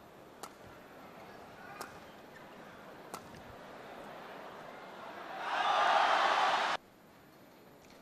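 Badminton rackets striking the shuttlecock, three sharp hits about a second and a half apart, then arena crowd cheering swells loudly as the rally ends and the point is won, cut off suddenly near the end.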